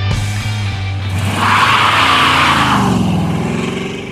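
A car engine driving by, with a loud rushing surge in the middle and the engine note dipping and then rising near the end, over background music.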